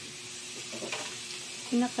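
Slices of pork belly sizzling faintly on a hot grill pan over a portable gas stove, with a few light clicks about a second in.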